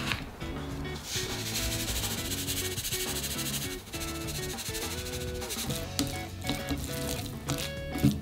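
Fine salt poured in a thin stream onto corn kernels in a glass bowl, a soft steady hiss that starts about a second in and stops just before the fourth second, over background music.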